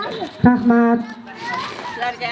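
Several voices talking at once, with one loud, steady held vocal call about half a second in that lasts about half a second.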